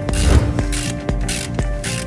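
Ratchet wrench with an 8 mm socket clicking as it turns a bolt, in several short bursts about half a second apart as the handle is swung back and forth; the first burst is the loudest.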